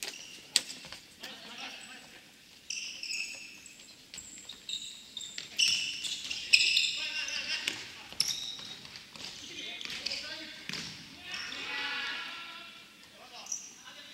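Futsal ball thuds and kicks, with short high squeaks of players' shoes on a hardwood gym floor, echoing in the hall.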